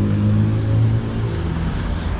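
A motor vehicle's engine running close by, a steady low hum over street traffic noise, easing slightly after about a second.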